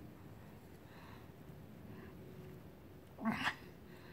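A common adder hissing once, briefly and in two quick pulses, about three seconds in. This is its defensive warning while coiled and ready to strike.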